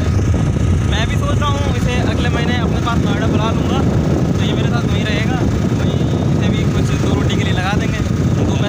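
Steady rumble of wind and engine noise on a phone microphone carried on a moving motorcycle, with men's voices talking over it at intervals.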